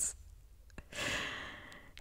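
A brief, faint laugh, then about a second in a long breathy exhale like a sigh that fades away.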